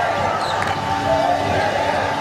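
A handball bouncing on a wooden sports-hall floor, with sneakers squeaking on the court and players' voices in the echoing hall.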